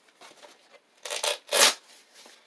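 Padded fabric knee pads being handled and pulled at: two brief rustling scrapes, about a second in and again half a second later, the second one louder.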